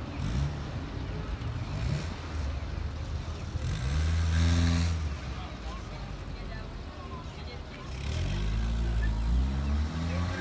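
Street traffic: a car engine passes loudly about four seconds in, and another engine speeds up, rising in pitch, near the end, over steady street noise.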